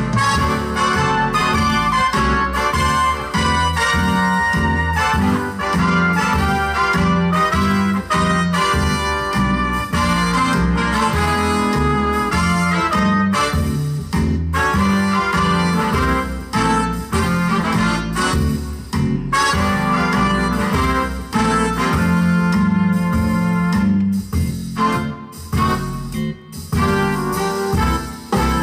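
Yamaha Genos arranger keyboard played live: a right-hand melody with chords over the keyboard's automatic accompaniment style of bass and drums, a steady swinging rhythm.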